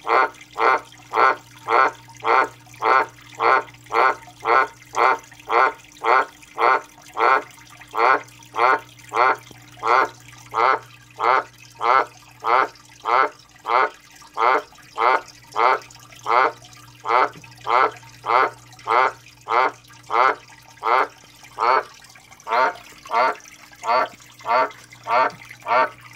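Australian White's tree frog (dumpy tree frog) calling: a short croak repeated steadily at about three calls every two seconds, without a break.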